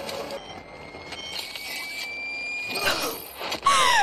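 Battle-scene soundtrack from an animated episode: a thin, high whine slowly rising in pitch for about two seconds, then a sudden loud blast near the end.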